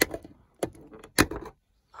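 Sharp plastic clicks from handling a car's overhead interior light: its pried-off lens cover and bulb being worked loose. Three distinct clicks about half a second apart, the third the loudest.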